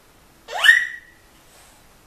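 A toddler's high-pitched squeal, about half a second long: it sweeps sharply up in pitch and holds at the top before fading.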